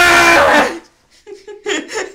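A man's loud, high-pitched mock scream lasting under a second, a vocal sound effect. Short bursts of laughter follow after a brief pause.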